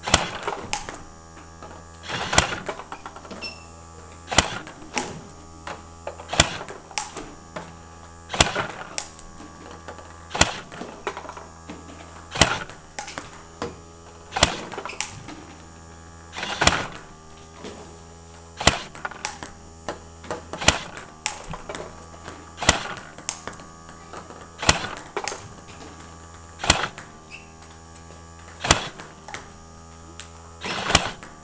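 Table tennis rally against a ball-throwing robot: the ping-pong ball ticking sharply off the table and the bat over and over, the loudest tick about every two seconds with lighter ones between. A steady low hum runs underneath.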